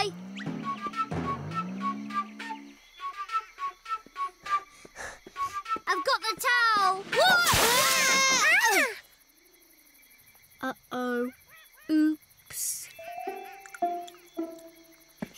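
Children's cartoon music and sound effects: repeated swooping, bouncing tones, then a run of light plucked notes. A louder burst of wavering tones comes in the middle, and the sound then drops almost to quiet before a few short effects.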